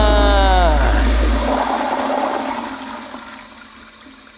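Edited transition sound effect: a tone falling in pitch over about a second, over a rushing noise that fades steadily away.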